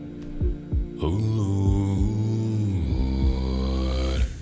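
A cappella vocal group performing: a deep bass voice and beatboxed kick-drum thumps, then a full, held vocal chord that enters about a second in.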